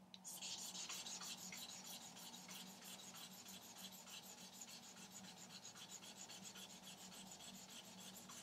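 Faint, quick, even back-and-forth scrubbing of a polishing charcoal rubbed with water over a small copper plate, several strokes a second. This is the charcoal stage that stones the copper down to a flat, fine matte finish.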